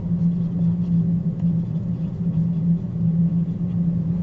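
Steady low hum of background noise, even in level, with no distinct events.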